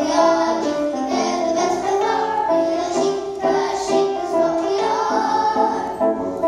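Young children singing a song together, in a run of short held notes.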